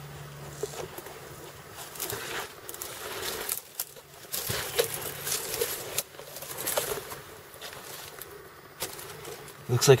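Rustling and scraping of dry brush, palm fronds and sandy soil as a person crawls and clambers through undergrowth on a bank, in irregular bursts with a few sharp snaps. A faint low insect buzz is heard near the start.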